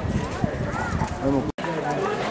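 Several people talking at once in the background, no single voice clear, with one sharp knock about half a second in. The sound drops out briefly about a second and a half in, at a cut.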